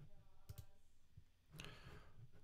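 Faint computer mouse clicks, about three short clicks in two seconds, as SVG code is copied and the view switches between applications.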